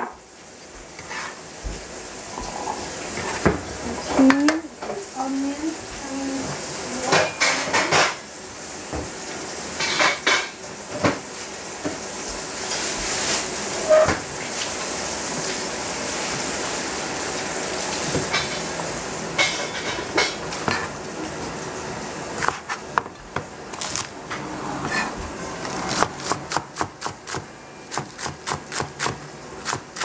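Pan and utensil clatter with a hiss of frying that swells through the middle, as cut mushrooms go into the hot pan and are stirred. Near the end a Chinese cleaver starts chopping green onions on a plastic cutting board, about three quick knocks a second.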